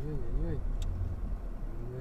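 Low, steady engine and road rumble inside a moving car. A pitched tone wavering up and down about twice a second fades out about half a second in, and a short steady tone sounds near the end.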